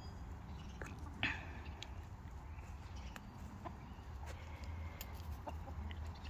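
Backyard hens clucking softly while they forage, with scattered short calls and one louder call about a second in.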